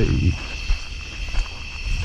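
Steady chorus of night-singing insects, with a low rumble underneath and a sharp click a little under a second in.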